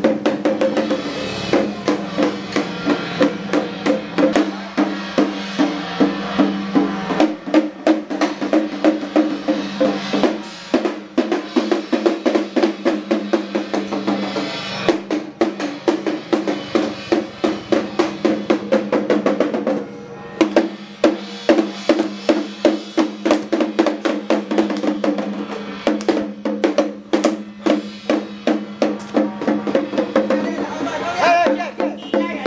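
Chinese temple ritual drumming: hand drums beaten in a rapid, steady rhythm over a held ringing tone, with a brief break about twenty seconds in.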